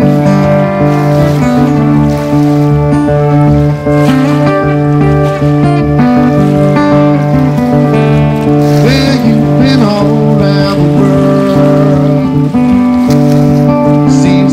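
Acoustic guitar strumming under a fiddle playing sustained, sliding bowed lines: an instrumental passage of a slow Americana/Celtic-style song.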